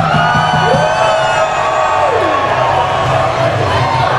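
Live band playing through a loud festival PA, with a long held vocal note that slides up and then down over a steady low bass drone.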